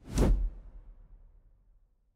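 A whoosh transition sound effect with a deep low end. It swells and peaks within the first half second, then fades away over the next second and a half.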